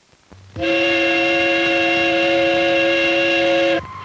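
Steam whistle sounding one long blast of about three seconds, a chord of several tones that starts about half a second in and cuts off sharply.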